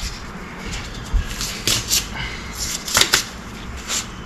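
Handling noise: rubber gloves being peeled off hands, rustling and crackling with a few sharp snaps, and a dull bump about a second in.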